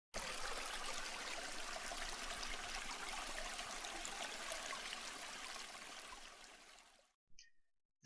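A steady rushing noise like running water, fading out over the last few seconds, then a brief faint blip.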